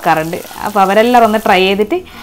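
Kalmas frying in shallow oil in a pan, a steady sizzle, under a woman's voice talking loudly over it.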